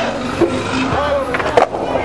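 City street noise with scattered voices from passers-by, and sharp knocks or clatters about half a second in and again near the end.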